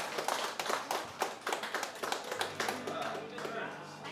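A small audience clapping by hand, with some voices mixed in; the clapping thins out and fades over the last second or so.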